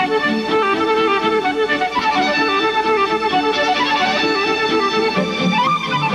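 Flute playing a quick melody of many short notes, with a lower accompaniment beneath it and a short upward slide near the end.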